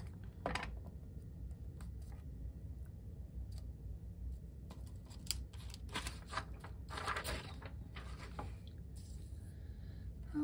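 Hands handling cardstock and small die-cut paper pieces on a craft mat, with scattered light rustles, taps and clicks that are busiest in the second half, as a leaf is glued down and the liquid glue bottle is set down. A low room hum runs underneath.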